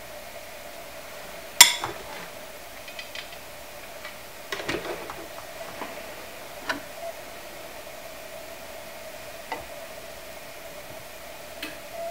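Small craft items handled on a tabletop: a few scattered clicks and knocks, the sharpest about one and a half seconds in and a cluster around five seconds in, over a steady hum.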